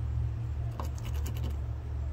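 Screwdriver scraping and clicking against a ribbed plastic truck bed liner as a small screw is picked out of its grooves, with a few sharp clicks about a second in. A steady low hum runs underneath.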